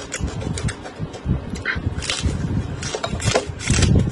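Close-up ASMR eating sounds: crunchy chewing of raw green onions, a quick run of irregular wet crunches and crackles.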